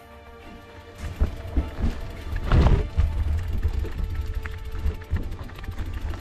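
Soft background music, then about a second in, loud wind rumble on the camera microphone and the rattling and knocking of a mountain bike riding down a rough, leaf-covered forest trail.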